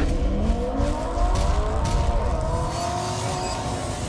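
Intro sound effect of a racing car engine revving at high rpm, its pitch held fairly steady with small rises, over a deep rumble.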